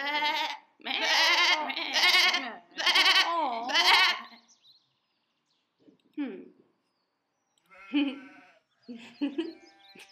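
Goat bleating: about four long, wavering bleats in quick succession, the last one warbling strongly. A short falling sound follows after a pause, then breathy chuckling near the end.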